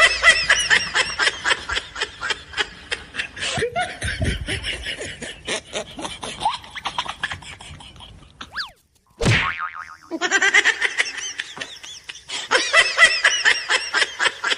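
Comic sound effect laid over the sketch: a rapid string of short, springy, bouncing chirps, several a second. About eight and a half seconds in it breaks off for a quick falling swoop, then the chirps start again.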